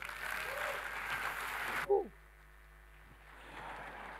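Seminar audience applauding, cut off abruptly about two seconds in, after which the hall is quiet.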